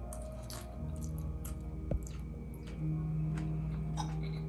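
A person chewing a mouthful of crunchy arugula salad with chopped toasted almonds, with a scatter of short crunching clicks, over soft background music with held notes.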